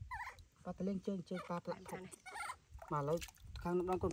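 A person's voice making short, quickly repeated 'um, um' hums at a low steady pitch, with a brief high squeak right at the start.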